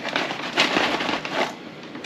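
A filled mylar food-storage bag crinkling and rustling as hands push an oxygen absorber down into the dry beans inside it, dying down about a second and a half in.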